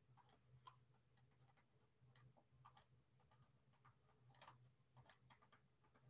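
Near silence with faint, scattered taps and scratches of a stylus writing on a tablet, the clearest about four and a half seconds in, over a faint steady low hum.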